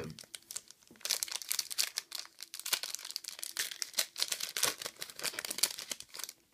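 A Pokémon trading card booster pack's plastic wrapper crinkling and tearing as it is opened by hand: a dense run of sharp crackles from about a second in.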